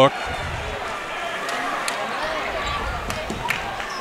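A basketball being dribbled on a hardwood court, a few sharp scattered knocks, over the steady murmur of an arena crowd.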